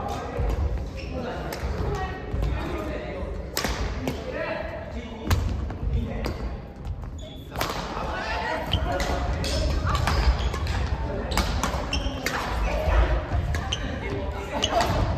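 Badminton rally: sharp, irregular cracks of rackets striking a shuttlecock, with players' feet thudding on the court floor. It sounds like a large sports hall, with voices in the background.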